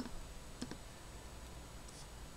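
Computer pointer-button clicks, as when clicking in an app on screen: a single click, then a quick double click about two-thirds of a second later.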